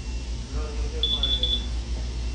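A quick run of four or five short, high electronic beeps, about a second in.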